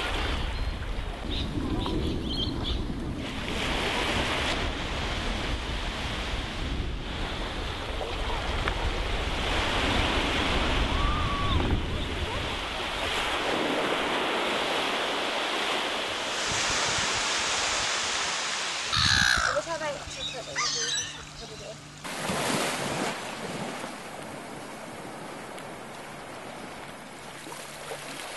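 Surf washing onto a beach, with wind rumbling on the microphone. A few short calls come about three-quarters of the way through.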